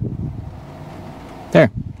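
Steady low hum inside a semi-truck cab.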